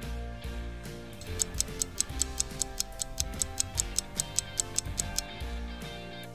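Clock-ticking sound effect, quick even ticks about five a second, starting a little over a second in and stopping near the end, over background guitar music.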